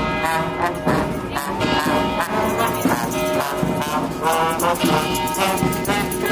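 Street brass band playing a tune with horns over a steady drum beat.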